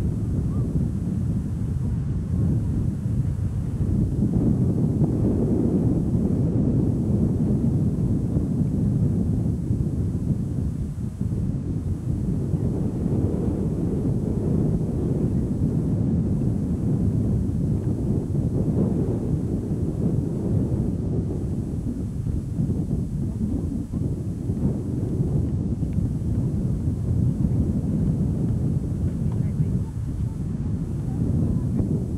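Wind buffeting an outdoor camcorder microphone: a steady low rumble that swells and eases.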